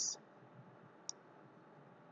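Near silence with a single short click about a second in.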